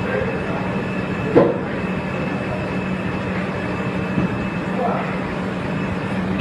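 Steady machine drone with a constant hum tone, from a flat UV curing conveyor machine running on a print-shop floor. A short sharp clack about a second and a half in.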